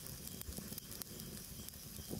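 Faint background sound-bed: a low hum with scattered light crackles and patter.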